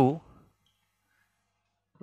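A man's spoken word trails off, then near silence with faint marker strokes on a whiteboard.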